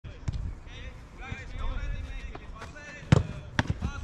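A football kicked hard a little after three seconds in, with a few lighter thuds of balls struck or landing around it.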